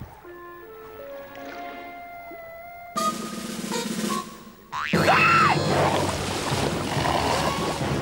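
Cartoon soundtrack music and sound effects: soft notes climbing step by step, then a sudden louder entry about three seconds in, and a louder noisy crash with a brief sliding tone about five seconds in that carries on.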